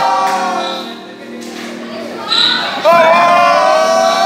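A recorded song with a solo singer played over speakers in a large hall. A sung line fades out in the first second, and a long held note comes in just before the three-second mark.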